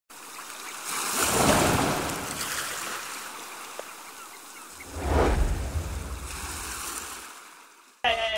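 Ocean-surf sound effect over an animated logo intro: a rushing swell of surf about a second in that eases off, then a second surge around five seconds with a deep low rumble, fading out near the end.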